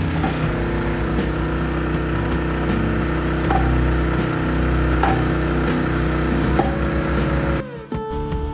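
Hand post driver hammering the top of a 12-inch I-beam, striking about once a second, driving the beam down into the hard pan. A small engine runs steadily underneath, and the sound cuts off abruptly near the end.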